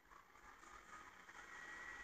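Near silence: faint room tone with a low hiss.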